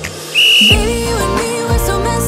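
A short, steady high signal tone about half a second in, marking the switch to the next exercise in an interval workout. Background pop music plays throughout and comes in louder with a heavy bass just after the tone.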